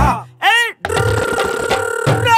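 Soundtrack music at a transition: two short swooping vocal-like glides that rise and fall in pitch, a brief gap, then about a second in a new passage starts with held tones under a busy texture.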